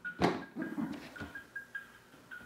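A large cardboard toy box knocked against a head with one dull thump, followed by a faint tune of short, high notes.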